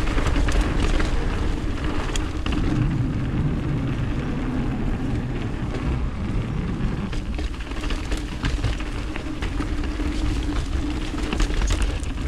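Mountain bike rolling fast down a dirt forest trail. There is a continuous low rumble of tyres and air on the camera, with frequent short rattles and clicks from the bike over the rough ground.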